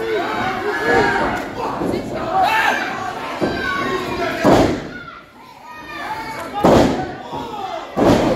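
Two loud smacks of strikes landing between wrestlers in the ring, about halfway through and two seconds later, with fans shouting and calling out around them.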